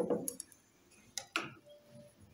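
A metal spoon knocking and scraping against a stainless steel pot while stirring thick atole: one louder knock at the start, then a few light clicks a little over a second in.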